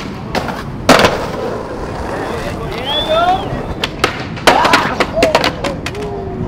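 Skateboard tricks on a concrete ledge: a loud clack of the board about a second in, and another sharp board impact and landing about four and a half seconds in, with wheel rolling and smaller clicks between. Voices call out around the tricks.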